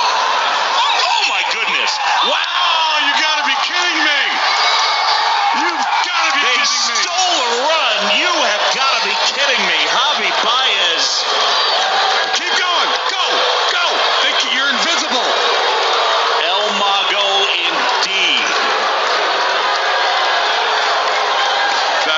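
Baseball stadium crowd: many overlapping voices shouting and cheering as a continuous loud din.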